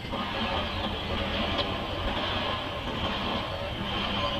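Steady running noise of an approaching diesel-hauled passenger train, rising a little at the start.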